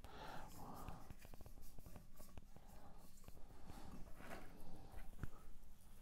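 Faint rustling and small crackles of dry sphagnum moss being pulled apart by hand and tucked into an orchid's glass pot.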